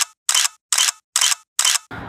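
Camera shutter clicking five times in a row, about every 0.4 seconds, with dead silence between the clicks.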